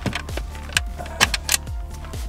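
A few sharp metal clicks as a sliding bolt latch on a plywood storage box is worked open, over background music.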